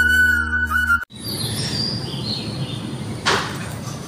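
Flute-led background music that cuts off suddenly about a second in, followed by a quieter background with birds chirping and a brief rustle about three seconds in.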